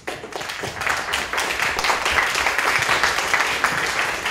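Audience applauding, swelling over about the first second and then holding steady.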